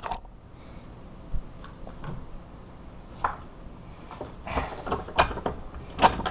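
Metal objects being handled and set down on a workbench: a few short clinks and knocks scattered over several seconds.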